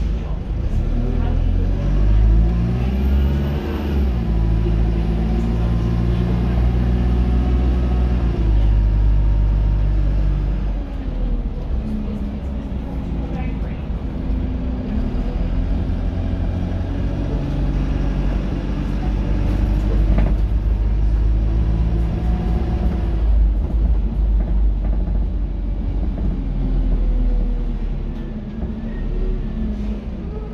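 2003 Dennis Dart SLF single-deck bus heard from inside the saloon: its engine and drivetrain rumble steadily. The engine note climbs as the bus accelerates, most plainly over the first few seconds, with changes in pitch as it moves through the gears.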